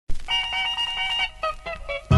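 Short musical sting for a logo intro: one held note, then a few quick short notes, with no bass.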